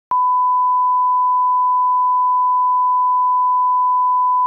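Broadcast line-up reference tone accompanying colour bars: a pure, steady 1 kHz sine tone that switches on abruptly just after the start and holds one unchanging pitch and level.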